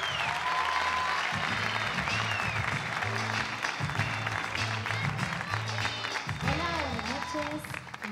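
Theatre audience applauding over music with a steady, pulsing bass line, with a few voices calling out.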